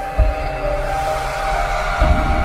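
Cinematic intro music: held synth notes stepping in a slow melody over a deep bass hit about a quarter second in, with a rising swell building toward the end.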